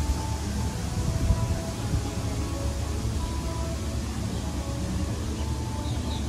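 Themed background music playing outdoors, a melody of short held notes, over a steady low rumble and irregular low thumps on the microphone.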